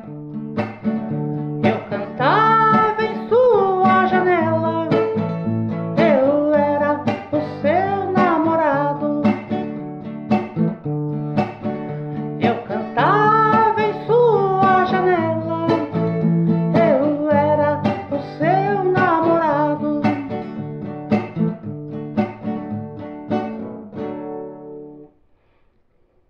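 Plucked guitar chords under a wordless, gliding vocal melody sung in two long phrases, an interlude between verses. The music stops about a second before the end.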